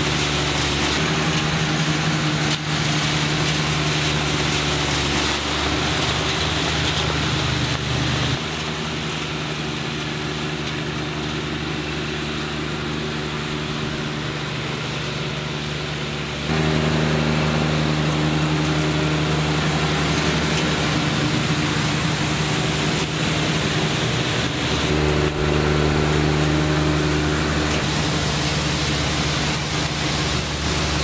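John Deere 1025R compact tractor's three-cylinder diesel running steadily as it tows a Sweep-All sweeper, whose rotating brush sweeps grit and gravel off pavement. The sound drops a little for several seconds in the middle, then returns.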